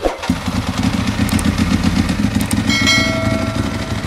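A motorcycle engine running with a rapid, even beat. A steady higher tone joins about three seconds in.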